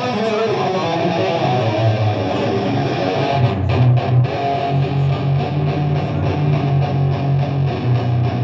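Amplified electric guitar played live on stage, strummed chords with no singing. Bass guitar notes come in about a second and a half in and settle into a steady repeated low line from a few seconds in.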